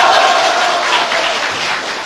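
Audience applauding, fading off toward the end.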